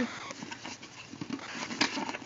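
Soft rustling and a few faint clicks of a hand moving inside an open Damier Ebene coated-canvas handbag, against its microfiber lining, with a sharper click near the end.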